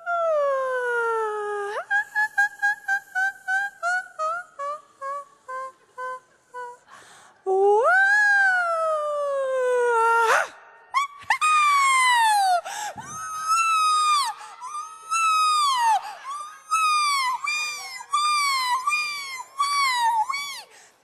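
Violin played freely in sliding glissandi: a long falling slide, then a run of short notes stepping downward and fading away, then a slide up and a long slide down, then a chain of quick swooping arcs up and down.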